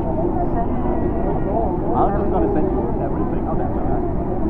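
Steady low roar of Niagara's American Falls, falling water.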